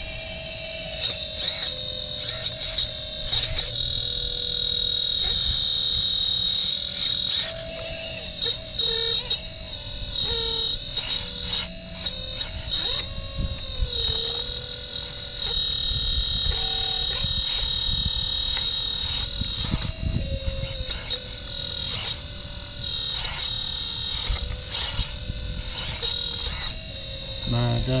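Hydraulic pump and motors of a 1/12-scale RC Caterpillar 339D excavator whining, the lower pitch dipping now and then as the arm and bucket take load, while a higher whine comes and goes. Scattered scraping and crackling as the bucket rips out roots and soil.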